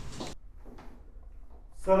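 A door being opened: a short rush of noise that cuts off sharply, then a faint click.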